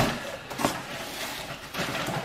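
A cardboard shipping box being opened by hand: a sharp snap at the start and a lighter one soon after, with faint paper and cardboard rustling as hands work inside the box.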